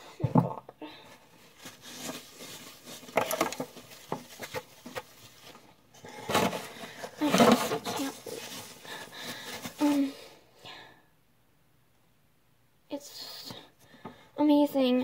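Slime being mixed and squeezed by hand: irregular wet squelching and crackling bursts, with a gap of near silence for about two seconds near the end.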